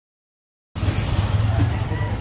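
Silence, then outdoor street ambience cuts in abruptly under a second in: a steady low rumble with hiss.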